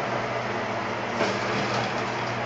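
Cove SH-5 meat shredder running steadily with a low hum while it shreds chicken breast into coarse pieces. A brief louder rasp comes about a second in.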